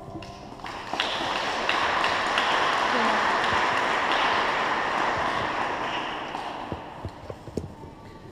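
Audience applauding at the end of a song. The clapping swells in about a second in, holds, then dies away over the last few seconds into a few scattered claps.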